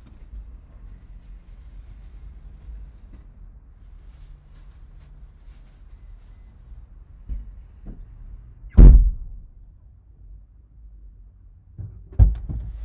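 A car door being shut, heard from inside the car: two small knocks, then one heavy thump a little under nine seconds in, over a faint low rumble.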